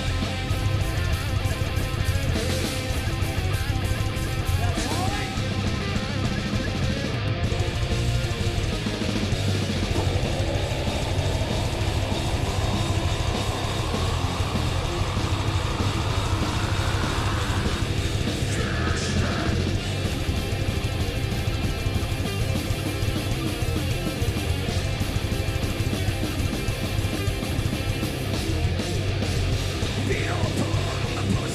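Heavy metal band playing live at full volume: distorted electric guitars over a pounding drum kit, with a slow rising sweep in pitch over several seconds in the middle.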